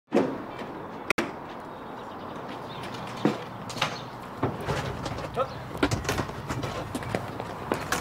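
A small van's rear door being opened with a clunk near the start, then outdoor ambience with light knocks and brief voice sounds.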